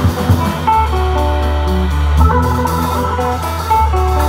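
A jazz organ trio playing live: electric archtop guitar over organ with held bass notes, and a drum kit.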